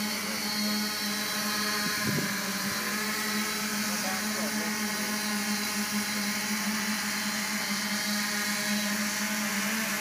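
Multirotor octocopter's eight electric motors and propellers running in flight, a steady buzz with a strong, constant low hum.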